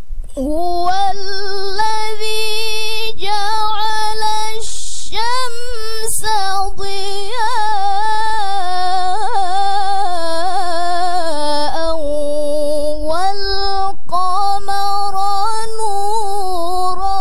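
A young woman's solo melodic Quran recitation (tilawah) into a microphone: long held notes in a high voice with wavering, ornamented turns, starting about half a second in, with a short break for breath about five seconds in.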